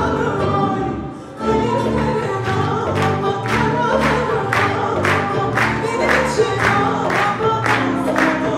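Live Turkish classical music ensemble of kanun, tanbur, ney, kemençe, violin, guitars and hand percussion accompanying a female singer in makam Tâhir. The ensemble dips briefly about a second in, then resumes with a steady drum beat of about two strikes a second.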